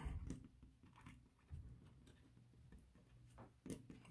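Near silence, with faint light scratches and ticks of a felt-tip marker writing on a textured plastic sheet.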